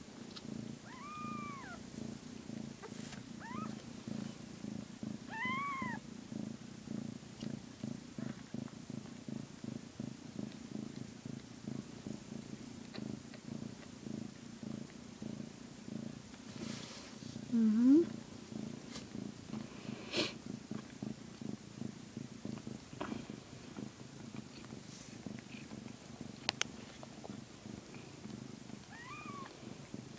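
Calico mother cat purring steadily while her newborn kittens nurse. Short high squeaky calls, typical of newborn kittens, come a few times: about a second in, twice more within the first six seconds, and again near the end. A brief louder rising call comes about halfway through.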